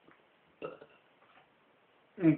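Mostly near silence, with one short, quiet vocal noise from the man a little over half a second in, a brief throat or mouth sound rather than words.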